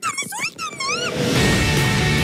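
A woman's very high-pitched shouting in a film trailer for about the first second, then loud trailer music comes in with held, steady chords.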